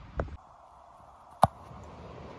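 A football kicked: one sharp thump of the kicker's foot striking the ball about a second and a half in.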